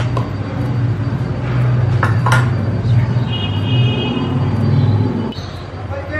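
A low motor or engine rumble that stops about five seconds in, with a few light clicks about two seconds in.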